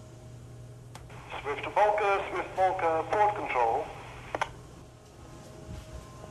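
A tinny voice over a bridge radio speaker, speaking for about two and a half seconds between two sharp clicks, over a steady low hum.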